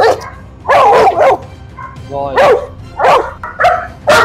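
A dog barking about five times in short, loud barks, in a tense face-off between a Rottweiler and a pit bull.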